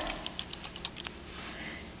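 A quick run of faint, light clicks, about eight or nine in the first second, with one slightly sharper than the rest.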